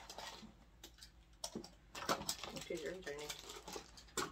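Small figure packaging handled and opened by hand: a brief crinkle of plastic and several sharp clicks as a small box and a clear plastic bag are worked open.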